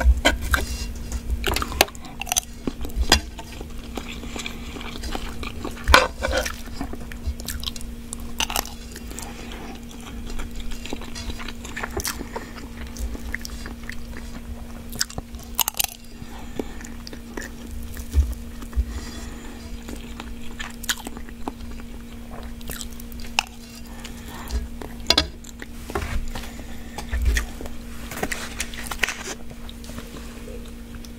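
Close-miked eating of ramen fried rice: chewing and biting with irregular sharp clicks and scrapes of a metal spoon against a nonstick skillet. A steady low hum runs underneath.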